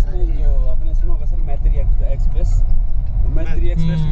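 Low, continuous engine and road rumble inside the cabin of a moving Mahindra vehicle, with voices talking over it.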